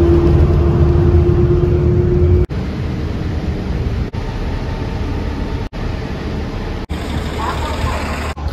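Transit bus engine and road noise in several short clips cut one after another: first a bus cruising on a highway with a steady hum and a steady tone, then buses running at a station, with a bus passing close near the end.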